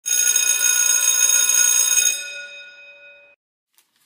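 A bright, bell-like ringing sound effect that starts suddenly, holds steady for about two seconds and then fades out.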